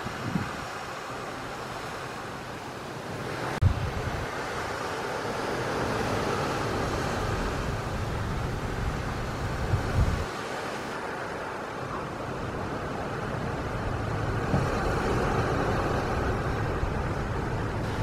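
Wind buffeting the microphone on a ship's open deck, over a steady rush of sea and ship noise, with a couple of brief low thumps.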